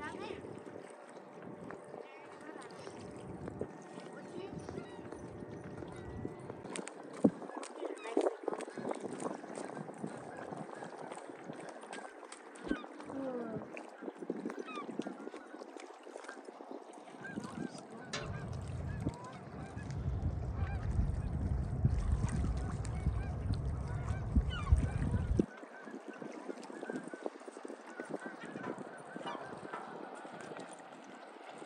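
Birds calling on and off, many short calls from several birds. Wind rumbles on the microphone for about seven seconds past the middle, then cuts off suddenly.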